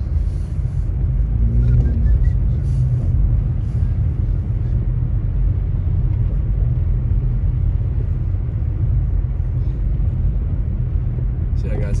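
Steady low rumble of road and engine noise inside a moving car's cabin as it drives along a snow-covered road.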